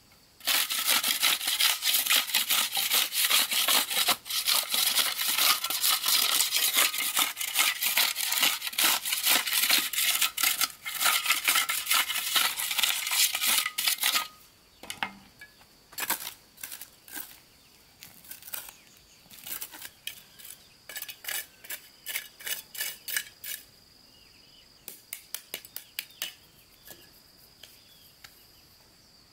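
A metal hoe scraping and dragging gravelly soil in quick continuous strokes for about fourteen seconds. After that come shorter, quieter runs of scraping strokes, with a shovel working the soil.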